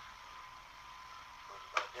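Recording background: a steady faint hiss with a thin, steady high whine under it, then a voice starting up near the end.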